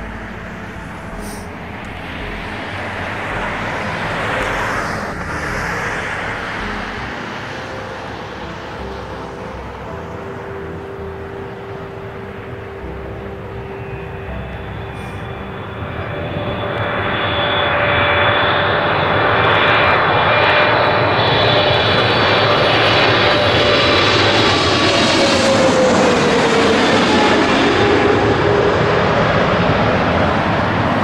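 Boeing 777 jetliner on final approach, its twin turbofans growing much louder about halfway through as it comes in low overhead. The engine noise carries a steady high whine, and a tone slides down in pitch near the end as the jet passes by.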